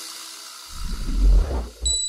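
Children's song ending: the last chord dies away, then a logo sound effect plays, a low whoosh that swells and fades, followed near the end by a short high steady beep.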